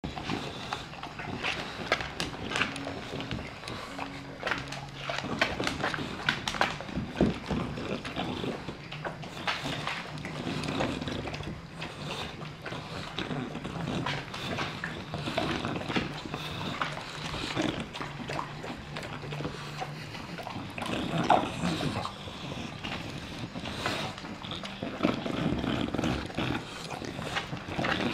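Two bulldogs eating peas off a hardwood floor: an irregular, continuous run of chewing, licking and sniffing noises, full of small quick clicks.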